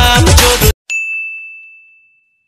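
Loud music cuts off abruptly, and a moment later a single bright ding sounds and slowly fades away: a bell-like sound effect.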